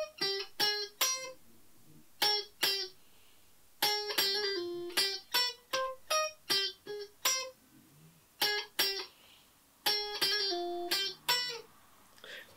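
Stratocaster-style electric guitar playing a keyboard riff in C minor as short, separate single notes. The notes come in phrases with brief pauses between them.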